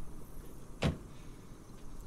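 A single short, sharp knock about a second in, over faint steady background noise.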